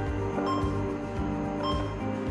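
Background music with held notes over a soft, regular beat.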